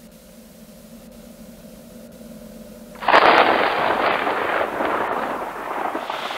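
A faint low hum, then about halfway through a campfire's crackling comes in suddenly and loud, a dense spitting crackle that carries on.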